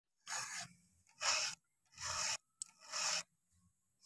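Chainsaw chain being sharpened with a hand file: four even rasping strokes across the cutters, a little under a second apart.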